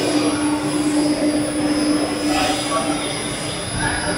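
Rotary kiln running: a steady mechanical noise of the turning shell, riding ring and support roller, with a steady hum under it.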